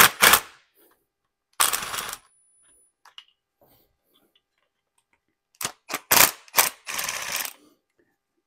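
Cordless quarter-inch-drive power tool with a 10 mm socket running in short bursts to spin nuts off a relay bracket. There is a burst at the start, a longer one about two seconds in, then several quick bursts near the end.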